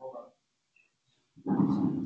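A dog barking loudly, starting about one and a half seconds in, after a short spoken word.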